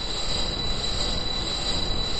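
Mechanical screeching sound effect from a 1960s TV soundtrack: a steady grinding noise with two high whistling tones held over it. It is the sound of a spiked ceiling trap lowering.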